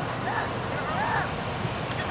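Two short shouted calls from men playing soccer on the field, too distant to make out as words, over a low steady rumble of wind on the microphone.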